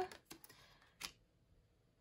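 Faint handling of tarot cards, with a couple of soft clicks as the cards are moved and the clearest tap about a second in.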